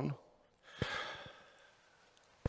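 A person takes an audible breath, a soft airy sound about a second long, with a faint click near its start.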